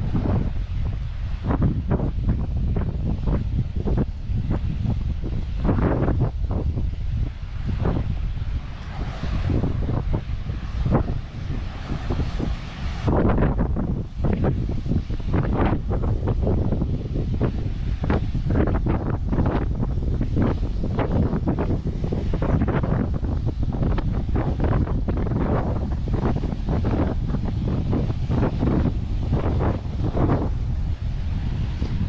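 Strong wind buffeting the microphone in irregular gusts, with ocean surf underneath.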